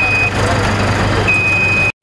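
Dhollandia wheelchair lift on a city bus lowering its platform, with a high electronic warning beep sounding about once a second over a steady low hum. The sound cuts off suddenly near the end.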